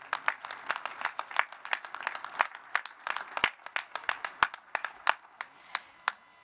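A small audience clapping, the separate hand claps distinct rather than blended into a roar; the clapping stops just before the end.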